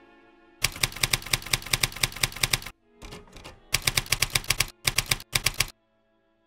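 Typewriter keys clacking in quick runs of about seven strokes a second, in several bursts broken by short pauses: a typing sound effect laid over a title being typed out on screen.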